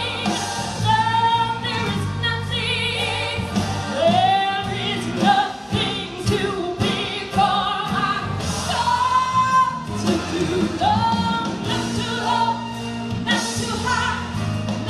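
A woman singing a gospel song over instrumental accompaniment, with long held notes sung with vibrato.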